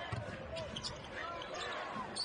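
Basketball game sound in an arena: a ball dribbled on the hardwood court, with faint low thuds, over a low crowd murmur.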